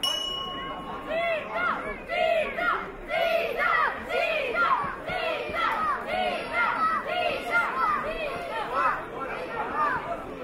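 Ring bell struck once to open the first round, its tone ringing for about a second. Then spectators shout loudly and repeatedly at the fighters, one call after another.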